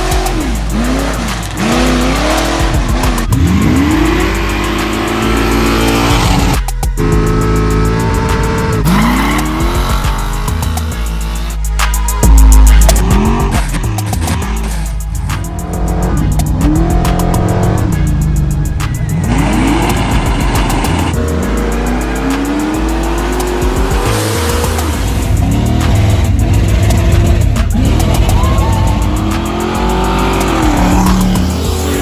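Car engines revving up and dropping back over and over, with tyre squeal, mixed under a music track with a heavy bass.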